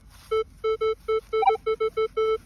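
Minelab Manticore metal detector beeping as its coil sweeps over buried targets: a quick string of short beeps, about five or six a second, mostly on one low tone with an occasional higher beep.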